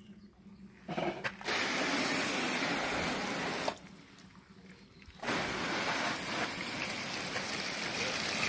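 Garden hose spray nozzle spraying water against a car's door panel and wheel, an even rushing hiss that starts and stops as the trigger is squeezed and released: a short spurt about a second in, a longer spray, a pause of about a second and a half, then spraying again.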